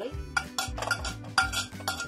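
A metal spoon clinking and scraping against a plate as it pushes chopped garlic off into a pot, in a quick run of clinks with the sharpest about one and a half seconds in, over background music.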